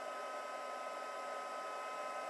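Craft heat gun running steadily, an even rush of blown air with a steady motor whine, as it dries wet bicarb paste.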